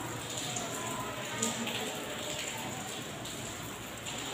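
Chalk scratching and tapping on a blackboard as a word is written, a few faint strokes over a steady hiss.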